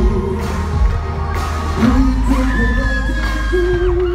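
French pop song played loud over a concert sound system, with a heavy bass beat and singing. A long, high held voice runs through the second half, with crowd noise under it.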